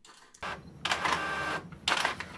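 Epson EcoTank ET-2700 inkjet printer printing a text page, its mechanism whirring in uneven passes. It starts about half a second in, is loudest around the middle, and rises sharply again just before the end.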